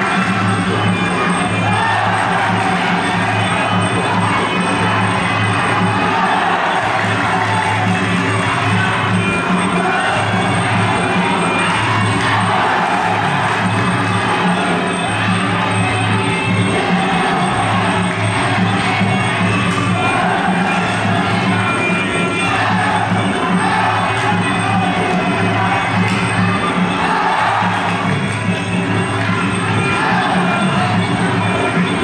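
Traditional Kun Khmer boxing music playing without a break through the bout, with crowd shouts and cheers over it.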